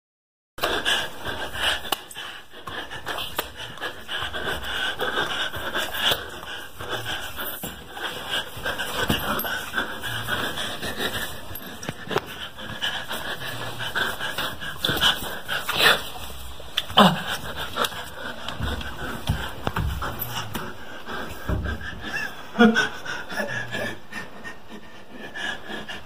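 Heavy, continuous panting breaths, starting abruptly about half a second in after silence.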